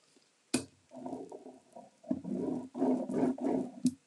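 A single click about half a second in, then a low rubbing rumble as a hand presses and smooths a paint inlay sheet onto a painted wooden box.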